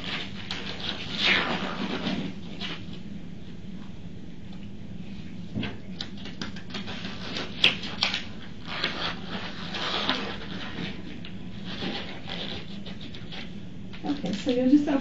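Irregular rustling, crinkling and small clicks of paper and plastic packaging being handled as a DNA cheek-swab kit is opened, over a steady low room hum.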